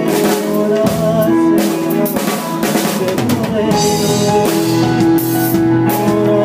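Live rock band playing an instrumental passage, the drum kit to the fore with snare hits and cymbal crashes over held chords from the band.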